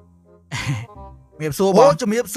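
A person's short breathy sigh about half a second in, followed near the end by a voice starting to speak, over faint background music.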